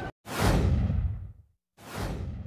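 Two whoosh transition sound effects. Each rushes in suddenly and fades over about a second, its higher part dying away first; the second comes about a second and a half after the first.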